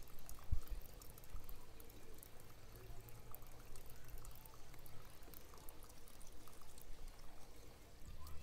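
Liquid seaweed-and-fish-emulsion plant food being poured from a plastic bottle into its cap, faintly.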